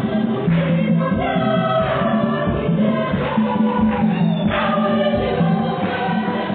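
Church choir singing a gospel hymn, several voices together.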